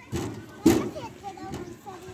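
Young children's voices and babble while playing, with one sharp thump about two-thirds of a second in, the loudest sound.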